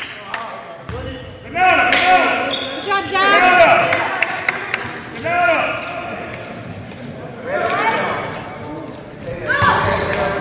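Basketball bouncing on a hardwood gym floor during a youth game, with short shouts from players and spectators now and then, all echoing in the large hall.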